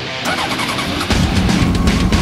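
Motorcycle engine starting and running, growing louder about a second in, with background music.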